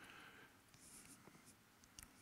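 Near silence: room tone with a few faint, soft noises.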